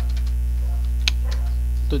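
Steady electrical mains hum on the recording, with a few faint clicks of computer keys being typed, the sharpest about a second in.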